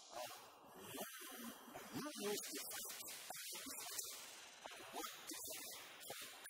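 A man's voice talking in short phrases with brief pauses, over a steady hiss.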